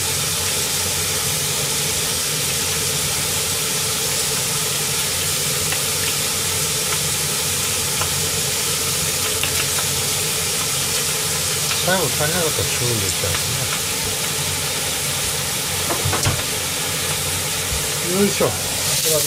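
Pork, eggplant and vegetables sizzling steadily as they fry in oil in a frying pan. Brief murmurs of a voice come about two-thirds of the way through.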